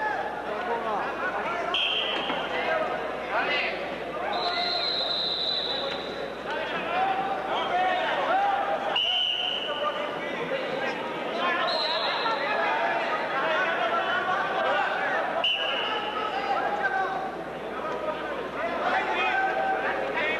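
Many voices chattering in a large hall, cut by five short, steady, high whistle blasts at slightly different pitches: referees' whistles on the wrestling mats.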